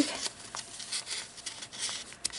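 Faint rustle of paper being handled, with a light tick or two, as a paper tag is slid partway out of a small envelope made from a book page.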